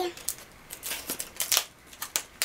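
Stiff clear plastic blister packaging crackling and crinkling as it is handled and opened: a run of short crackles.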